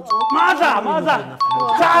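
A two-note ding-dong chime, high note then lower note, sounds twice about a second and a half apart, over excited voices.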